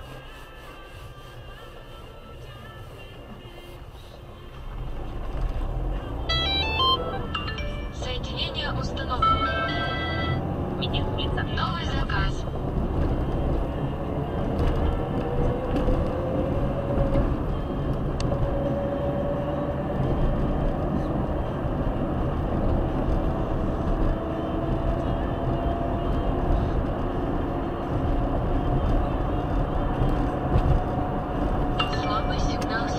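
Car interior engine and road noise as the car pulls away from a standstill about four seconds in and speeds up, with a whine that rises with the revs, drops once at a gear change and climbs again.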